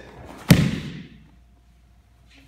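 A person thrown in a takedown lands on the training mat: one heavy thud about half a second in, dying away quickly.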